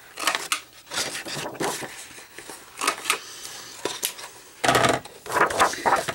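Handling of paper and cardstock on a tabletop: scattered light clicks and knocks as a hand-held corner punch and sheets are moved, then a louder stretch of paper sliding and rustling about five seconds in.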